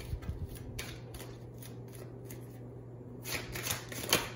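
A tarot deck being shuffled by hand: a run of quick papery card riffles in the first second or so, then a denser burst of shuffling near the end.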